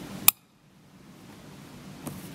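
One sharp plastic click about a third of a second in: an RJ45 modular plug's latch snapping into a router's Ethernet port. Faint hiss follows.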